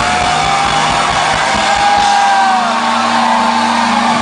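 A rock band playing live and loud, with guitars and drums, heard from inside the crowd. One long high note is held through the first half or so.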